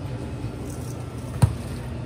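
Steady low machine hum of a kitchen, with a single sharp knock about a second and a half in.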